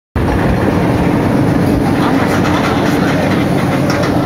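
Oblivion roller coaster train running along its steel track, a steady rumble with rapid clatter and a steady hum under it.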